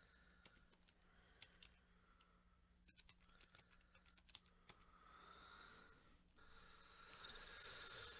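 Faint computer keyboard typing: scattered soft key clicks as numbers are entered, over a low steady hum. A soft hiss comes up in the last three seconds.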